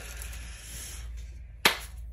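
A single sharp hand clap about one and a half seconds in, over a low steady room hum.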